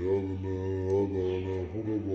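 A man's voice in a drawn-out, chant-like delivery with only brief breaks between phrases.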